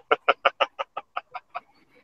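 A man laughing: a run of about ten quick, even "ha" pulses, about six a second, loudest at first and fading away over nearly two seconds.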